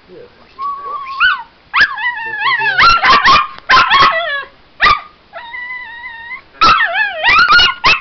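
A small puppy barking at a toy pig in sharp, high yips, coming in quick clusters, with two longer held cries between them.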